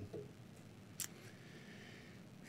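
Quiet room tone during a pause in speech, with a single sharp click about halfway through.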